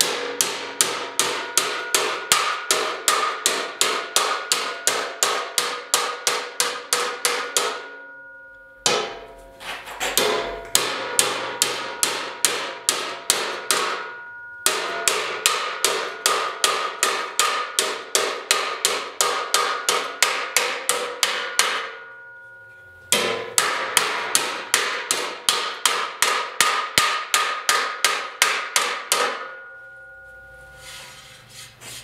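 Hammer blows on a steel checker plate clamped in a vise, bending its edge over. The blows come fast, about four a second, in four runs with short pauses between, and the metal rings after each strike.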